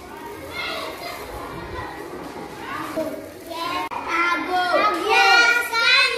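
Young children's voices, several children talking and calling out, growing much louder in the second half.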